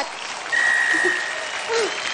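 Theatre audience applauding, with one steady high tone held for about a second near the middle.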